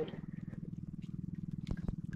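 Small outrigger boat's engine idling: a low, fast, even pulse with a few light clicks near the end.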